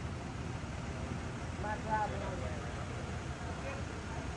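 Steady low rumble of idling vehicle engines, with faint voices talking in the distance about two seconds in.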